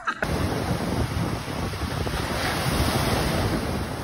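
Ocean surf breaking and washing ashore, with wind rumbling on the microphone. It starts abruptly a fraction of a second in and then runs steadily.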